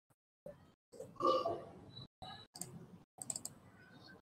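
Computer mouse clicks, several of them and a few in quick succession in the second half, as the new-project wizard's buttons are clicked through. About a second in there is a brief, louder throaty sound.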